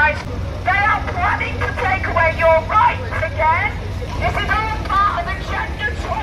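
Speech too indistinct to make out, running on with short pauses over a steady low rumble.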